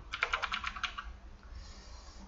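Computer keyboard typing: a quick run of about eight keystrokes in the first second, then near stillness.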